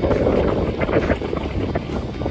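Gust of wind buffeting the microphone: a loud, irregular rush of noise that eases near the end.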